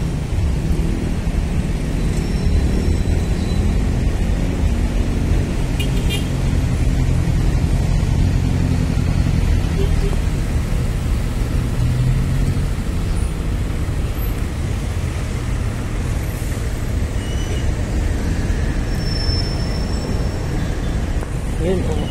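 Steady low road-and-traffic rumble heard from the open bed of a moving pickup truck, with city vehicles passing.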